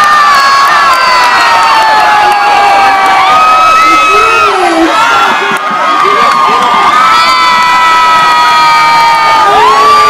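A crowd of teenagers cheering and screaming loudly, many long high-pitched yells held and overlapping, some sliding down in pitch.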